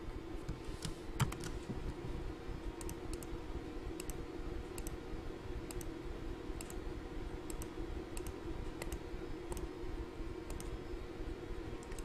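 A computer mouse clicking a dozen or so times at irregular intervals, over a steady low hum.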